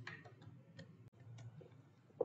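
A few faint, irregular ticks from a computer mouse, its scroll wheel turning as a drawing view is zoomed in, over near silence.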